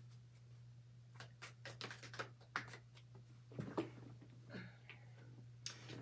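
Tarot cards being shuffled by hand: a scattered run of faint, light clicks and flicks of card stock over a steady low hum.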